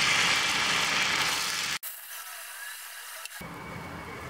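Dosa batter sizzling on a hot cast-iron tawa as a ladle spreads it round, a steady hiss with a light rubbing scrape. The sound breaks off abruptly a little under two seconds in, and a fainter hiss follows.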